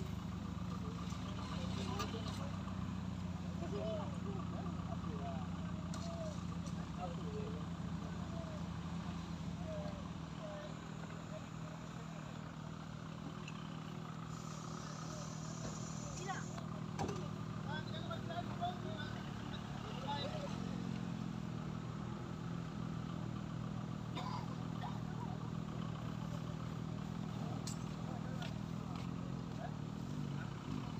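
Vehicle engine idling steadily under indistinct background voices.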